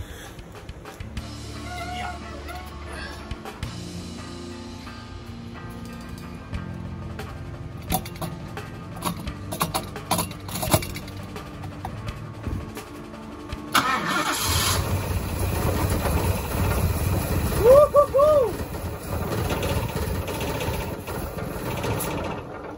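Ford XB Falcon ute's engine, after sitting for months, catching about two-thirds of the way in and then running steadily on a freshly rebuilt Holley 600 vacuum-secondary carburettor. It runs smoothly, with no rattles or ticks. Quieter clicks and rattles come before it catches.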